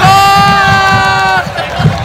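A man giving one long, loud shout right at the microphone, held at a steady pitch for about a second and a half and then breaking off, over the noise of a cheering football crowd.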